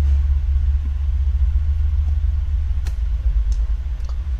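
Steady low rumble with a few light clicks of small screws and a screwdriver on a workbench, the clearest about three seconds in.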